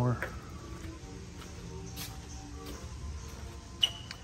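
Faint background music with a few light clicks.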